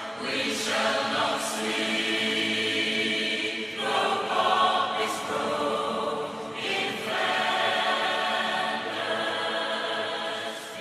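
A choir singing slow, held chords, moving to a new chord about half a second in, again near four seconds and near seven seconds.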